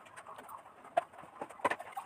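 Two sharp knocks in a small kitchen, about a second in and again just over half a second later, over faint background sounds.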